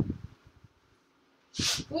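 Soft taps of cotton fabric strips being handled and laid on a table, then a short, sharp intake of breath a little over a second and a half in.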